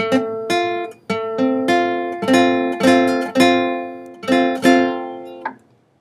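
Nylon-string classical guitar sounding a simple three-string F chord (A, C and F on the top three strings). The strings are plucked one after another in small repeated groups and left to ring, then stopped about five and a half seconds in. This tests whether each note of the chord rings clean under the flattened barre finger.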